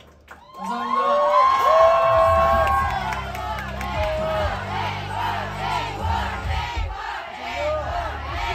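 Concert audience cheering with high-pitched, sustained voices, breaking out about half a second in right after the band's song ends. A low steady hum runs underneath.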